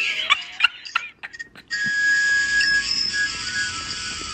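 Hold music playing through a phone's speaker: a thin, whistle-like melody of held notes that briefly cuts out about a second in.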